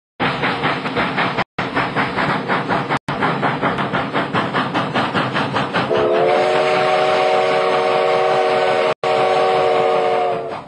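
Steam locomotive working hard, its exhaust chuffing in fast, even beats. About six seconds in, its steam whistle sounds a long steady chord of several notes over the chuffing. The sound cuts out briefly three times.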